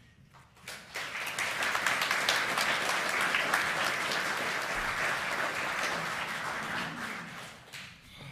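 Congregation applauding. The clapping swells up about a second in, holds steady, and dies away near the end.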